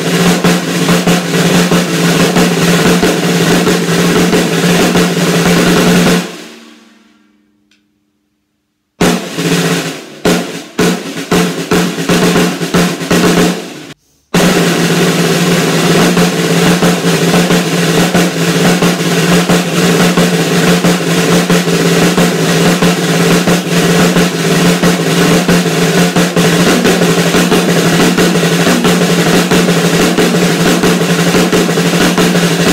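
Snare drum played with sticks: a dense roll that stops about six seconds in and rings out into silence, then a run of separate, spaced strokes, and after a brief break another continuous roll from about halfway through to the end.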